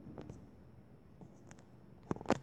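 A few faint taps on a tablet touchscreen while a face is drawn on it, heard over a quiet room.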